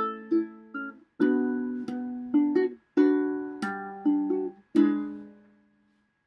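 Ukulele strummed without singing: chords struck in short phrases, each phrase stopped short, and the last chord left to ring and fade away near the end.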